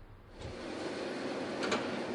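Petrol pump nozzle dispensing fuel into a car's tank: a steady rushing hiss of flowing fuel that starts about half a second in.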